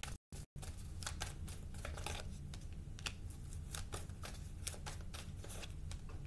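A deck of tarot cards being shuffled by hand, a continuous run of irregular soft clicks and flicks of card stock over a low steady hum.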